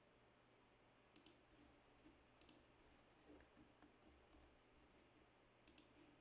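Near silence: faint room tone with a few soft, sharp clicks in close pairs, about a second in, about two and a half seconds in, and again near the end.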